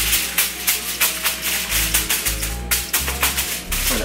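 Background music with a steady bass line, over dense, irregular crackling of aluminium foil being crumpled and pressed over a baking pan.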